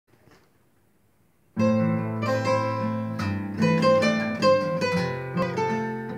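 After a brief silence, two acoustic guitars, a steel-string and a nylon-string classical guitar, start about a second and a half in. They play a fingerpicked instrumental intro: a melody of plucked notes over held bass notes.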